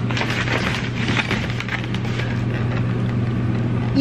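A styrofoam takeout container being handled and shifted about, with many small scrapes and clicks, over a steady low hum.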